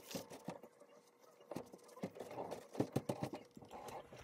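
Irregular light taps, clicks and rustles of painting work: a sheet of watercolour paper being handled and a paintbrush knocking against paper and paint tin. The taps bunch together more thickly about two to three seconds in.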